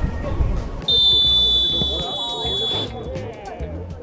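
A whistle blown in one long, steady, shrill blast of about two seconds, starting about a second in, over background music.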